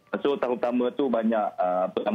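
Speech only: a person talking in Malay over a remote call link, the voice thin and cut off above the telephone range.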